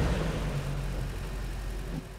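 Low, steady engine rumble of an SUV stopped on a steep ramp, slowly fading.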